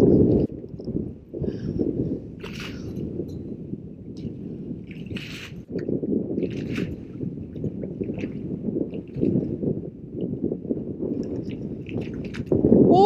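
Water sloshing and lapping against a boat's hull, with a few light knocks and clicks scattered through it.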